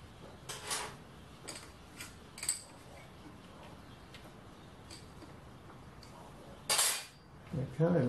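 A few light metallic clinks from steel tools being handled around the lathe, then a louder, short clatter about seven seconds in. The drilling spindle's motor is not running.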